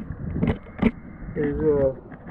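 A man singing a short, wavering note, with two sharp knocks about half a second and nearly a second in.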